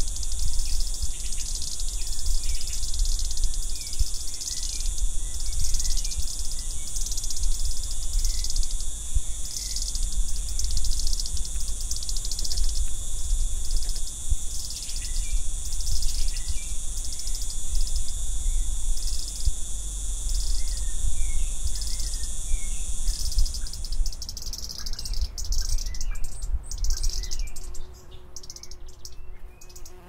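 A chorus of insects trilling high and steadily in regular pulses, with faint bird chirps and a low rumble underneath. The trill stops about 24 seconds in, leaving quieter, scattered insect and bird sounds.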